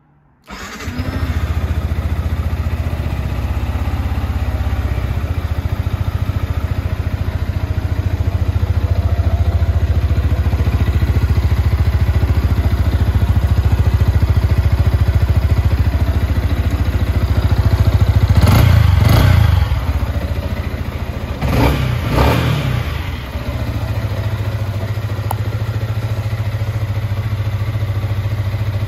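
Yamaha MT125's 125cc single-cylinder four-stroke engine starting about half a second in and idling steadily. It is revved briefly twice about two-thirds of the way through, then drops back to idle.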